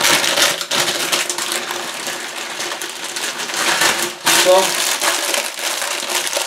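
Plastic packet of dried instant noodles crinkling and crackling in the hands as the noodle block inside is crushed into pieces.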